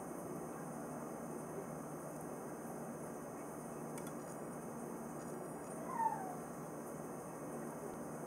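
Low steady room hiss, with one short falling whine about six seconds in.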